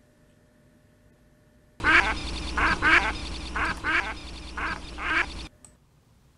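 A duck quacking in a series of about seven quacks. It starts about two seconds in and cuts off suddenly about five and a half seconds in.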